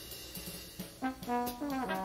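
Big band jazz. A full-band chord fades through the first half with light drum taps under it. About a second in, the brass section enters with held notes, and one line slides down shortly before the end.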